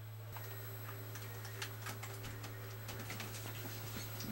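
Quiet room tone: a steady low hum with scattered faint ticks and clicks.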